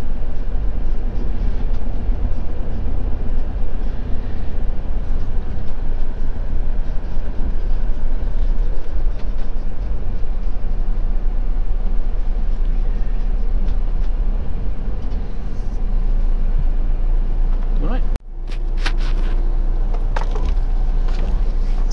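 Motorhome engine and road rumble heard from inside the cab as it drives slowly and pulls up. The sound cuts off abruptly near the end.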